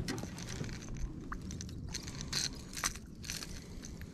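Light crackling and scattered small clicks of close-up handling noise, with a few sharper clicks in the second half.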